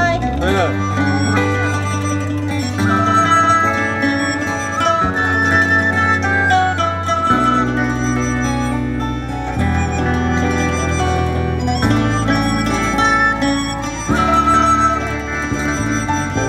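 Instrumental ensemble music of Chinese traditional instruments: a melody with plucked and bowed string tones over sustained bass notes that change every couple of seconds.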